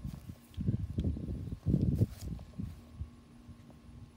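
Close-up handling noise of a camera being set down and positioned: dull bumps and rustling right on the microphone, loudest in two bursts about one and two seconds in, over a faint steady hum.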